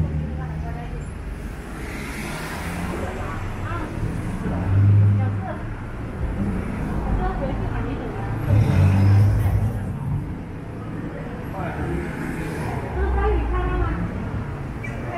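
City street traffic noise: cars going by on the road, with indistinct voices of passers-by. Several short low rumbles come through, the loudest about a third of the way in and again past the middle.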